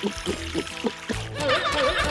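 Cartoon gulping sound effect: a quick run of about five glugs in the first second as a drink goes down, over background music that swells and changes near the end.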